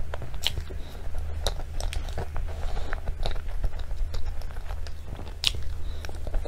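Close-miked eating of soft cream cake topped with chocolate cookie crumbs from a spoon: wet mouth clicks and smacks at irregular moments, loudest about half a second in and near five and a half seconds, over a steady low hum.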